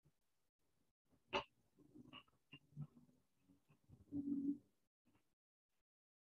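Faint knocks and clicks of a desk lamp being moved and angled over a drawing board, with one sharp click about a second in. A short low hum-like sound follows near the end.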